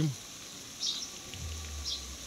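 Quiet pond-bank outdoor background: short high chirps come about once a second. A low steady hum sets in about one and a half seconds in.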